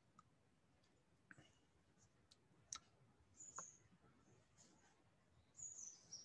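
Near silence with a few faint, scattered computer-mouse clicks and a faint high chirp near the end.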